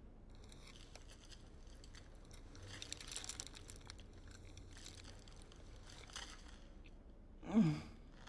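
Aluminium foil crinkling as foil-wrapped food is unwrapped and handled, loudest about three seconds in, with chewing. Near the end, one short, loud, contented voiced sigh.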